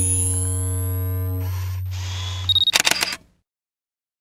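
Electronic intro sting: a low held synth drone with steady higher tones, then about two and a half seconds in a short high beep and a quick run of camera shutter clicks.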